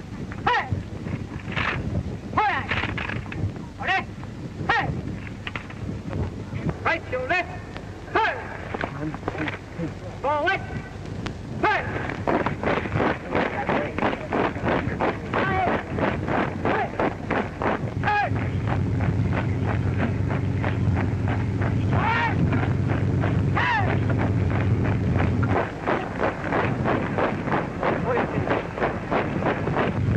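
Men's voices shouting drill commands amid scattered knocks. About twelve seconds in, a rapid, even tramp of marching feet sets in, roughly four steps a second, and grows louder, with further shouts over it.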